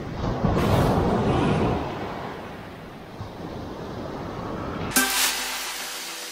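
Sea surf washing up the sand, loudest in the first two seconds and then easing off. About five seconds in, soft acoustic guitar music starts abruptly.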